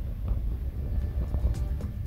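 Low, steady rumble of a car driving on a snowy road, heard from inside the cabin. Music comes in faintly about a second in and grows louder near the end.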